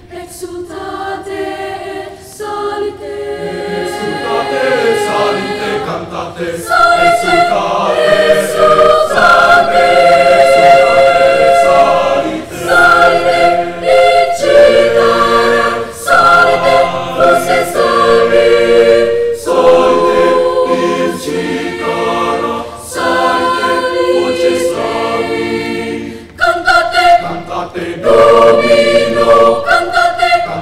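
Mixed choir of boys and girls singing a cappella in held chords. It starts softly and swells to full voice over the first several seconds, then goes on in phrases with brief breaks between them.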